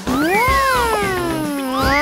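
A drawn-out, wavering, cat-like cartoon vocal sound that rises in pitch and then slowly falls, with a second rising call near the end, over background music.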